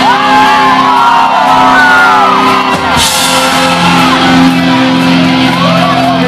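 Live rock band playing loud and full, with shouted vocals over held chords, recorded from within the crowd.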